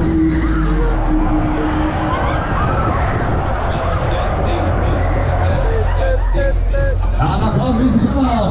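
Riders shouting and screaming on a spinning Mondial Shake R5 fairground ride, over the ride's steady low rumble. The cries swell near the end.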